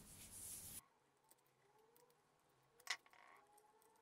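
Near silence with faint hiss that cuts off under a second in, then faint handling noise and one short click about three seconds in, as stripped cable cores are fitted into the terminal block of a plastic multi-socket strip.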